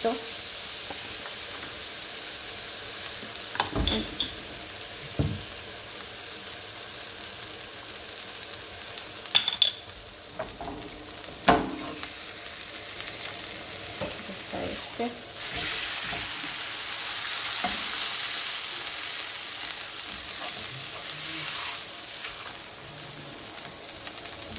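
A sauce-dipped corn tortilla frying in hot oil in a skillet, with a steady sizzle. A few sharp knocks of the spatula against the pan come in the first half, and the sizzle grows louder for several seconds past the middle.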